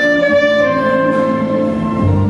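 Alto saxophone played live, holding one long steady note.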